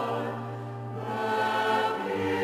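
A choir singing a slow hymn in long held notes.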